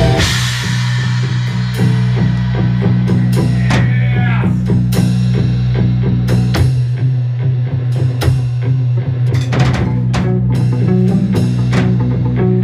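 Instrumental post-rock played live: a drum kit with kick, snare and cymbal crashes over a held, sustained low guitar drone. The dense guitar wall thins out at the start, leaving the drums in front.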